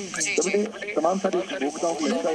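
Speech only: a voice talking over a telephone line, with a thin, radio-like tone.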